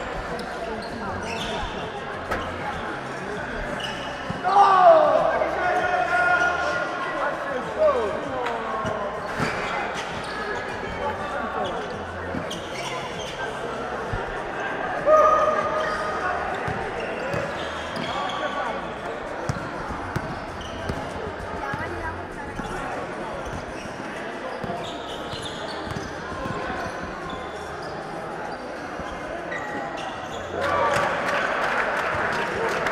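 Basketball being dribbled and bounced on an indoor court in a large, echoing hall, with shoes squeaking on the floor around five seconds in and players and spectators calling out.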